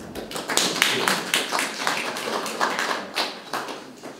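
A small audience applauding: many hands clapping in a quick, irregular patter, dying away near the end.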